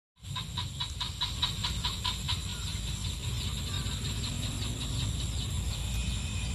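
A rabbit chewing fresh leafy stems, a rapid run of crisp clicks at about five a second that fades after a couple of seconds, over a low rumble.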